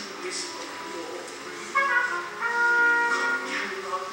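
A man singing a slow song line over pit orchestra accompaniment, holding long notes in the second half.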